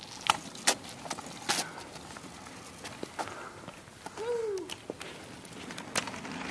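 A light-up kick scooter being ridden, its wheels rolling with a few scattered sharp clicks and knocks, and the rider calling out "woo" about four seconds in.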